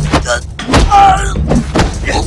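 Fight-scene sound: a string of sharp hits and scuffles, with a short strained vocal cry about a second in as a man is held in a rear naked choke.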